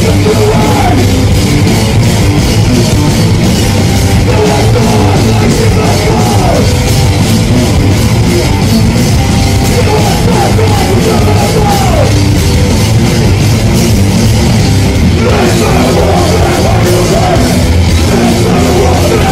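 Punk rock band playing live at full volume: electric guitar and bass over a fast, steady drumbeat, with a shouted lead vocal coming in phrases.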